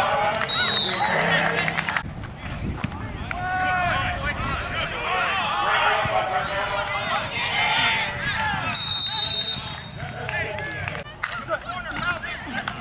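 Voices of people calling out around the football field throughout. A referee's whistle sounds faintly just after the start, and again in one loud, shrill blast about nine seconds in.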